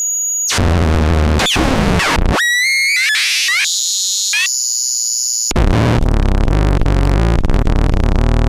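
Eurorack modular synthesizer (Mutable Instruments Stages and Tides with a Nonlinear Circuits Neuron) making harsh, glitchy noise that jumps abruptly between held high tones, falling and rising pitch sweeps and rough noise over a low drone. About five and a half seconds in it switches to a louder, dense buzzing noise.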